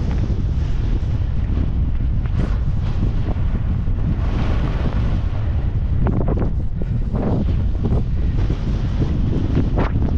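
Wind buffeting the microphone of a skier's worn camera as a heavy, steady low rumble, with surges of hiss from skis carving through soft powder snow, strongest between about six and eight seconds in.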